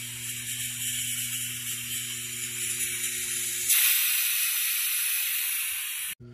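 Compressed air hissing from a pneumatic valve actuator fitted with a Neles ND9000 positioner, over a steady low hum. A little past halfway the hum stops and the hiss grows louder and brighter, then cuts off suddenly at the end.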